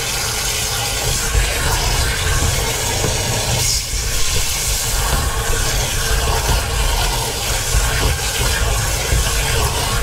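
Garden hose nozzle spraying water into a motorhome's waste water tank through its cleaning hatch: a steady rush and splash of water churning in the tank, with a low rumble under it, as the tank is flushed clean.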